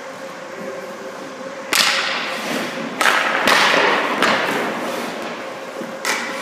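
Goalie's skate blades scraping and cutting the ice in quick pushes across the crease, several sharp scrapes each fading over about a second.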